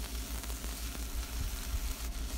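Guava leaves sizzling in oil in a nonstick frying pan while a spatula turns them.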